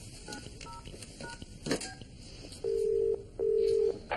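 Phone keypad beeps as a number is dialled, a quick run of short tones, followed by the ringing tone as the call goes through: two rings in quick succession, a British-style double ring.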